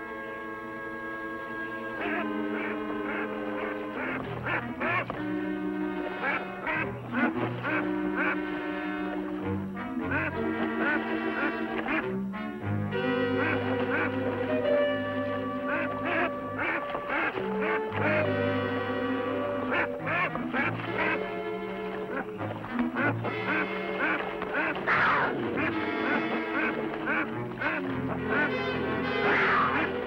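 Dramatic orchestral TV score playing over a Canada goose's repeated harsh honking calls as it thrashes and splashes in the water under attack.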